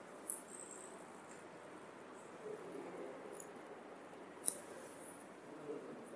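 Faint rustling and small clicks over quiet room tone, with one sharper click about four and a half seconds in.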